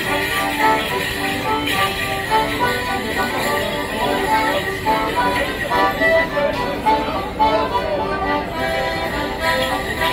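Live folk tune for Morris dancing, a steady run of short melodic notes, with the jingle of the dancers' leg bells and crowd chatter around it.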